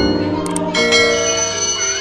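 A school bell ringing for recess, starting under a second in, with steady ringing over background music.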